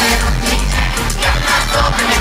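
Loud pop music with a heavy bass beat and singing.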